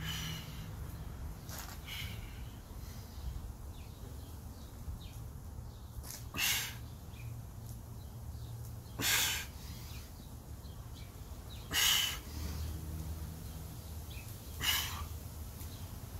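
A man breathing out hard in short bursts, about one every three seconds, from the effort of doing diamond push-ups. A low steady rumble runs underneath.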